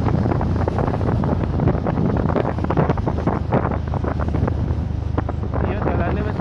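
Wind buffeting the microphone of a moving motorcycle, a loud, steady rush with irregular gusty thumps, over the rumble of the ride.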